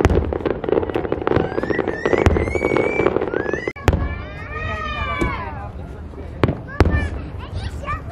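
Aerial fireworks shells bursting: dense crackling for about the first two seconds, then a string of sharp bangs spread through the rest. Spectators' voices call out between the bangs.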